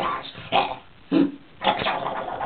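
A person's voice making animal-like noises in about four short, loud bursts, imitating the cartoon Tasmanian Devil's snarls as a Taz puppet is pushed at the camera.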